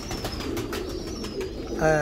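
Pigeons in a loft, a low steady background of cooing with faint clicks. A man's voice starts just before the end.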